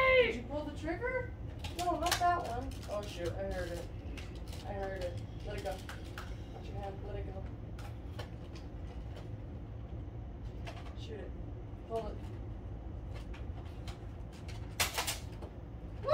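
A child's high squeal at the start, then soft talking for several seconds. After that come scattered small clicks and one short, sharp rushing noise near the end, over a steady low hum.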